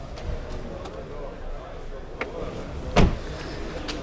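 A Chevrolet Malibu's car door being shut: one solid thump about three seconds in, with a lighter click shortly before it.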